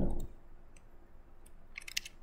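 Computer mouse clicks: a few faint single clicks, then a quick cluster of clicks near the end.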